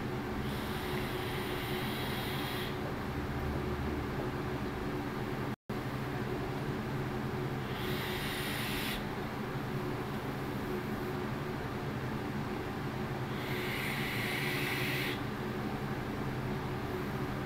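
Three hissing draws on a vape box mod, each lasting a second or two: the first about half a second in, the second around eight seconds and the third near the end. A steady low hum runs underneath.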